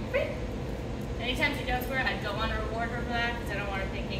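A dog yipping and whining in a run of high, wavering calls, starting about a second in and going on until near the end.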